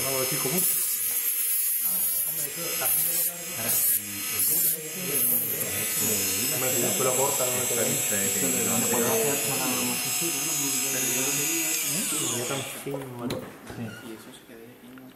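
Small hand-held rotary tool with a cutting disc running at high speed with a steady high whine while a scale-model antenna mast is shaped against it. The whine stops shortly before the end. People talk underneath.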